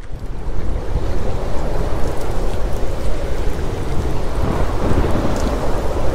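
Loud, steady rumbling rush of noise like rain and thunder, a stormy sound effect that starts suddenly.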